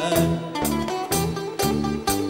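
Greek band music: a bouzouki plays a plucked melody over electric bass and drums, with a steady beat of about two strokes a second.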